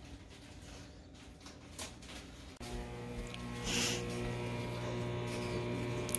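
Faint room tone, then from about two and a half seconds in a steady, low electrical hum with a buzzing edge; a brief hiss comes near the middle.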